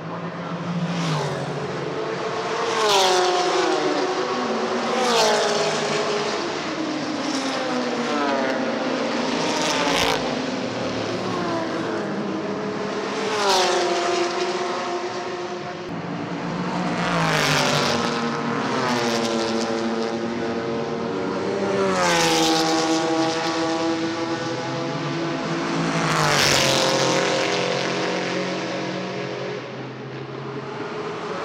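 Historic racing cars passing at speed one after another, about ten pass-bys in all. Each engine note swells and then drops in pitch as the car goes by.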